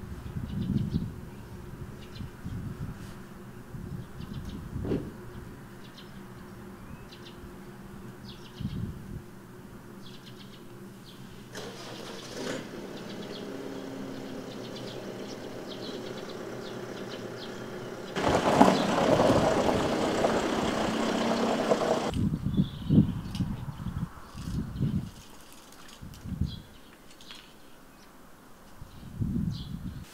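Small birds chirping, with an engine running in the background from about a third of the way in; for a few seconds around two-thirds through it becomes much louder, starting and stopping abruptly. Low bumps and thumps come and go at the start and end.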